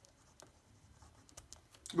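Pen writing on paper, with faint light scratches and small ticks as words are written out. A man's voice starts right at the end.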